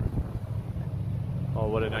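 Wind on the microphone, a steady low rumble from a breeze blowing in off the lake.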